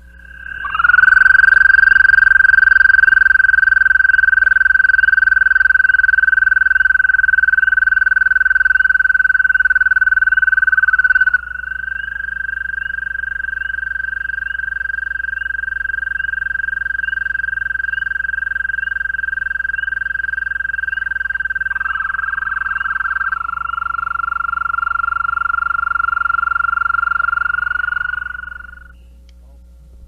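American toads trilling: long, high-pitched musical trills held on one pitch. The first runs about ten seconds, then a slightly higher-pitched male takes over. Near the end a lower-pitched male joins, so two trills overlap at different pitches, the way several calling males space themselves by pitch.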